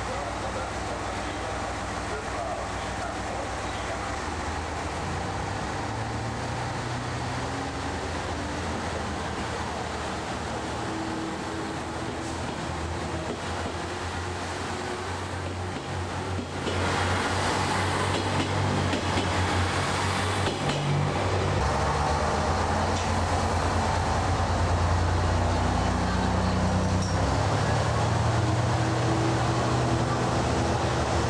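JR West KiHa 187 diesel express railcar pulling out of the station, its diesel engines running and their note rising in steps as it accelerates. From about 17 seconds it is louder, as the cars pass close by with engine and wheel noise.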